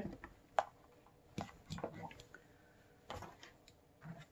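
Faint handling sounds of items being taken out of a cosmetics subscription bag: a few light clicks and taps with soft rustling in between.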